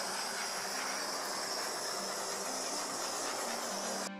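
Small handheld torch flame hissing steadily while it is passed over wet acrylic pour paint to pop cells; the hiss cuts off abruptly at the end.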